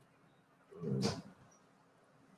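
A single brief vocal sound from a person at a headset or call microphone, about a second in; otherwise near silence.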